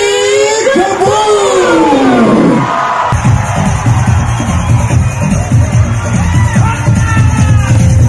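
Live concert sound over a PA: a voice holds one long note into the microphone that slides down in pitch over the first few seconds, then the band's music comes in heavily with a strong bass beat, with the crowd cheering.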